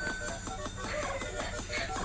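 Instrumental backing track with a steady, quick beat and regular high ticks, playing at moderate volume.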